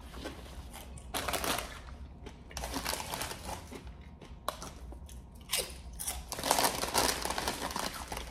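A crinkly foil-lined potato chip bag (Zapp's kettle chips) rustling in irregular bursts as a hand reaches into it and lifts it, mixed with crunchy chewing of chips.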